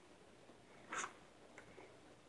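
A cat rummaging in a filing-cabinet drawer: one brief scratchy rustle of paper files about a second in, then a faint tick.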